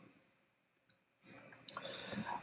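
Near silence in a pause between spoken sentences, with a faint single click about a second in and soft clicking and low noise near the end.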